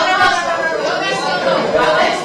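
Courtroom speech: voices talking over one another, too indistinct to make out, in a large echoing hall.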